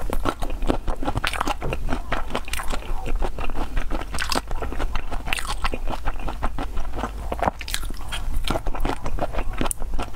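Close-miked chewing of raw black tiger shrimp in chili-oil sauce: a dense run of wet, sticky mouth clicks and smacks with no pauses.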